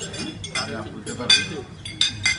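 Knives and forks clinking against china plates as people eat, a few sharp clinks with the loudest just past the middle, over men talking at the table.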